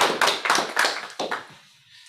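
A small audience applauding, the clapping dying away about a second and a half in.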